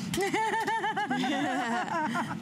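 People laughing: a quick run of about six short ha's in the first second, then a lower-pitched trailing laugh.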